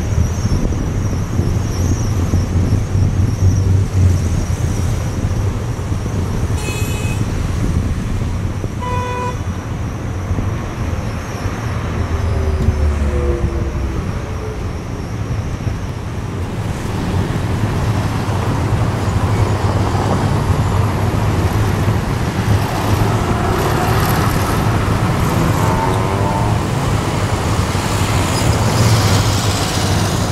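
Busy street traffic: cars and buses running past in a steady rumble, with a short horn toot about nine seconds in.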